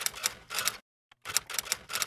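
Typewriter keystroke sound effect: a quick run of key clacks, a short pause about a second in, then a second run.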